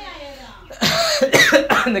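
People's voices: a quiet voice at first, then a sudden louder outburst of speech with a cough from about a second in.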